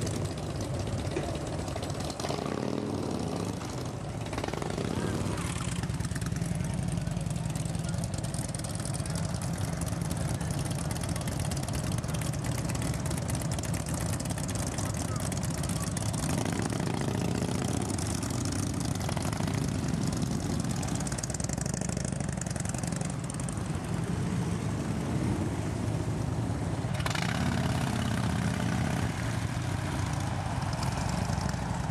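Several motorcycle engines idling and running together, a steady low rumble that holds throughout; tagged as Harley-Davidsons, likely big V-twins.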